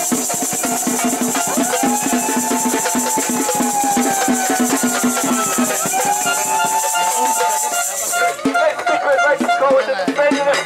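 Protest percussion: shakers and drums played in a fast steady rhythm, with long drawn-out calls over it. The shakers stop about eight seconds in.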